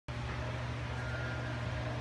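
A steady low hum with a faint hiss, even throughout.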